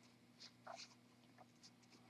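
Near silence: room tone with a faint steady low hum and a few faint small ticks.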